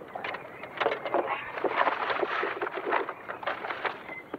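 Paper bag rustling and crinkling irregularly as food is got out of it.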